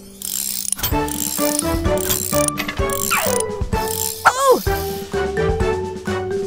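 Cartoon background music mixed with mechanical sound effects: rapid ratcheting and clicking like tools at work. A falling whistle-like glide comes about three seconds in, and a wavering rising-and-falling glide a second later.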